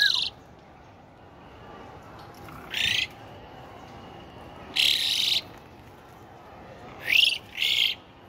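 Asian pied starling calling: short, loud, harsh calls with bending pitch, one at the start, one about three seconds in, a longer one about five seconds in, and two in quick succession near the end.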